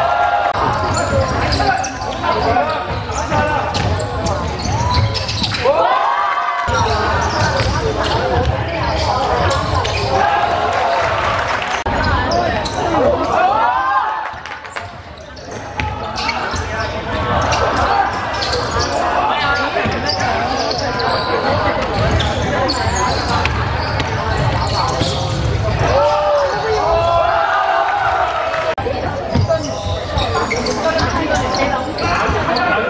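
Basketball game in a large sports hall: a basketball bouncing on the court amid players' indistinct shouts, all echoing in the hall.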